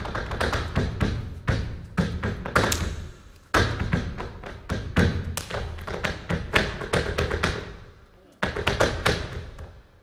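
Flamenco dance shoes striking a wooden stage floor in zapateado footwork: rapid clusters of heel and toe stamps and taps, each ringing briefly on the boards. The footwork eases twice, briefly, then comes back with a hard stamp.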